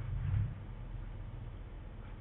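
Low, steady background hum of room tone, with no distinct sound event.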